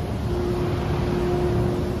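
Large electric fans running in a workshop: a steady rushing noise with a constant hum.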